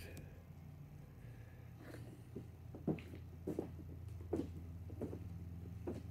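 Footsteps: about five soft steps, a little under a second apart, over a steady low electrical hum.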